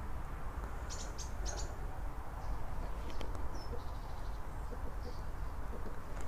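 A few faint, short, high bird chirps over steady outdoor background noise, with soft high clicks or rustles about a second in.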